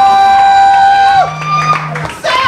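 Live rock band playing, heard through a camcorder's built-in microphone: one long held high note that bends down and drops away about a second in, as a steady low note comes in underneath.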